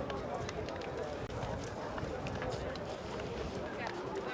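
Indistinct chatter of many voices out on the field, with scattered short slaps and claps of hands as players shake hands.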